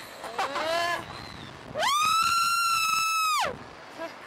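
A rider on a Sling Shot catapult ride screaming: a short falling cry, then one long high-pitched scream held for about a second and a half that rises at its start and drops away at its end.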